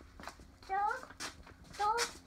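A toddler's voice making two short, high-pitched wordless vocal sounds that rise in pitch, one about a second in and one near the end.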